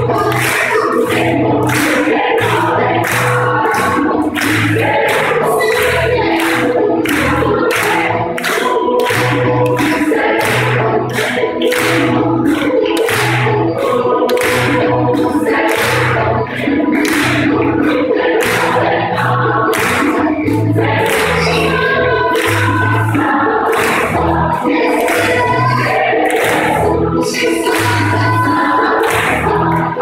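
Gospel choir singing, with steady rhythmic hand-clapping on the beat.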